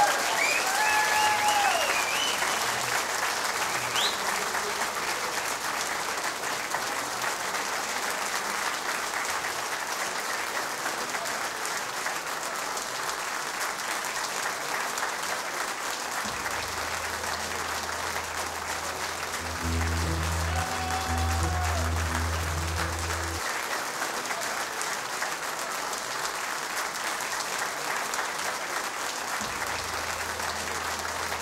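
Theatre audience applauding steadily after a song, with a shout or cheer in the first couple of seconds.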